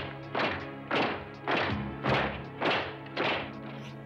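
Soldiers' boots stamping in a slow march, heavy thuds about twice a second, over a dark music score with a sustained low note.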